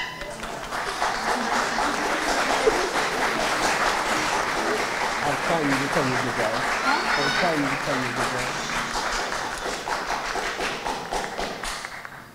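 Audience applauding and cheering, with shouts and whoops rising over the clapping about five to eight seconds in. The clapping dies away near the end.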